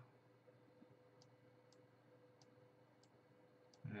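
Near silence, with a few faint computer-mouse clicks spread across a few seconds as the mouse is used.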